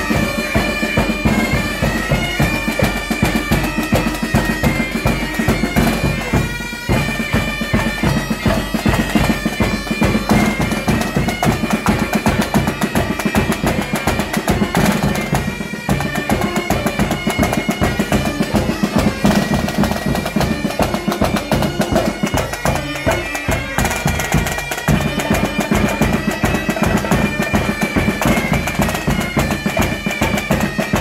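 Scout pipe and drum band playing: bagpipes sounding a tune over a steady drone, with a bass drum and snare drums beating time.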